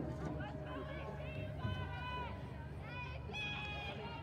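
High-pitched voices calling and shouting out across the field, several drawn-out calls in a row, over a steady low background hum.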